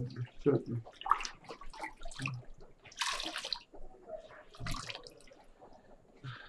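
Water sloshing and dripping as a cloth is dipped and wrung out in a plastic bucket of hot water, with the loudest splash about three seconds in.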